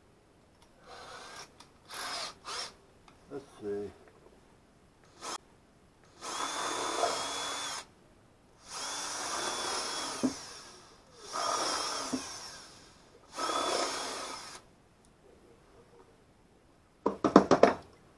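Cordless drill boring into wood, reaming out a hole to take a carriage bolt: a few short trigger pulls, then four runs of one to two seconds each with a steady motor whine. A quick clatter of knocks near the end.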